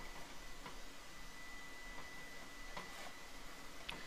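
Faint rubbing of a rag wiping oil over a hot cast iron skillet, with a few light ticks and a thin, steady high whine behind it.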